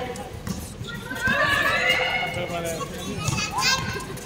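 Women's and girls' voices shouting and calling out in high pitches on a basketball court, loudest from about a second in.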